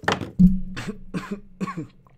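A man coughing, a fit of about five coughs in quick succession. The loudest cough comes about half a second in.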